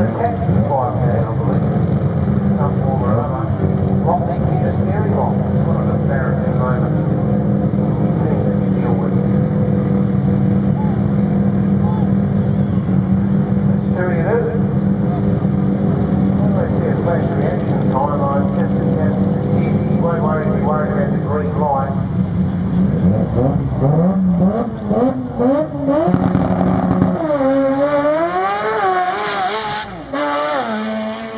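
Turbocharged rotary-engined drag car holding a steady, loud idle at the start line, then revving in steep rising and falling sweeps over the last several seconds as it stages and launches, running on low boost.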